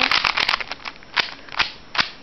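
Rubik's cube layers being turned rapidly by hand: a quick run of plastic clicks in the first half second, then a few single, spaced-out clicks. The cube is being turned over and over to work freshly applied silicone lubricant into it.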